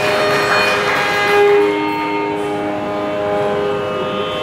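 Carnatic music: a violin plays long held notes that step from pitch to pitch over a steady drone, with a brief rush of noise in the first second.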